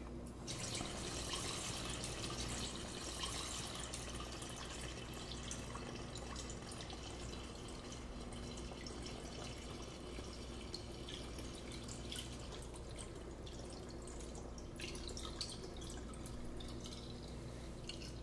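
A batch of cocktail poured in a steady stream from a plastic pitcher through a stainless steel funnel into a leather wineskin (bota). The pour starts about half a second in and is a little louder over the first few seconds.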